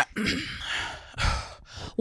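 A woman clears her throat, then gives a short breathy exhale, with a second, shorter breath about a second later.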